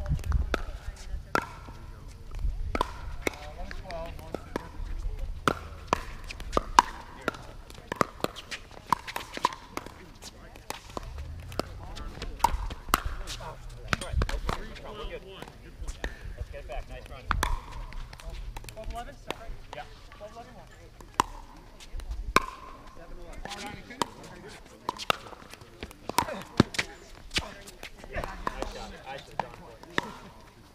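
Pickleball paddles striking a hollow plastic ball: repeated sharp pops with a short ring, coming roughly a second apart in runs of rallies with short gaps between, along with the ball bouncing on the hard court.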